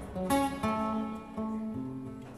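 Acoustic guitars playing live, plucked notes and chords ringing on, with a fresh note struck several times in two seconds.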